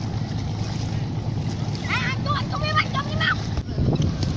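A steady low rumble, with high-pitched children's voices shouting and calling for about a second and a half around the middle.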